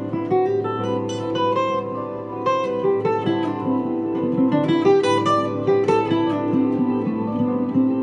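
Acoustic guitar played solo, a melody of single plucked notes over held lower notes.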